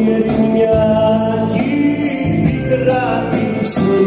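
Live Cretan folk music: a laouto strummed and plucked under a keyboard melody, with a male voice singing.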